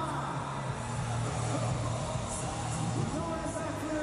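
Motocross bike engine revving up and down in repeated short rises and falls, mixed with arena music.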